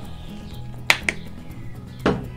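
Background music, with two sharp clicks close together about a second in from handling a plastic squeeze bottle of barbecue sauce.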